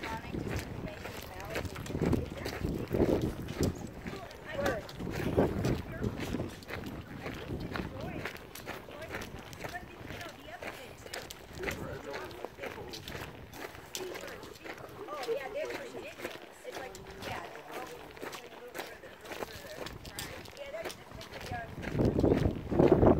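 Footsteps on a dry, stony trail scattered with pine debris, an irregular run of small steps, with people talking indistinctly under them.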